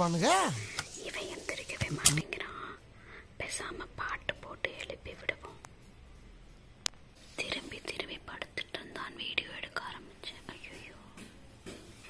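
Whispering close to the microphone, broken up by a few sharp clicks, after a brief voiced sound at the very start.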